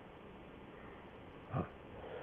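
A pause in a conversation with faint background hiss, broken once about one and a half seconds in by a man's short 'haan' of acknowledgement.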